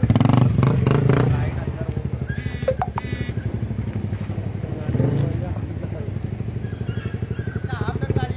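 Honda CBR250R single-cylinder motorcycle engine running under way, loudest as it pulls off at the start, then falling back as the bike moves off and swelling again about five seconds in and near the end.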